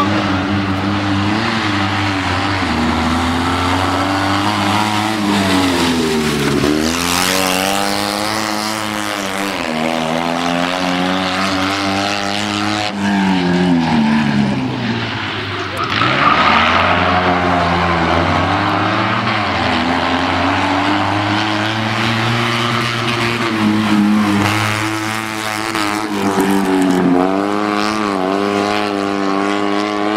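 Fiat 126p's rear-mounted, air-cooled two-cylinder engine revving hard through a cone course. The engine note drops and climbs again several times as the driver lifts off and accelerates between the turns.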